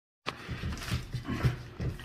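People laughing in short, breathy, rhythmic bursts.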